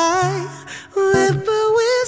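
Male voice singing a soul-pop ballad over an acoustic guitar: a held note fades out about half a second in, then a short wavering vocal run starts around a second in, with guitar notes ringing underneath.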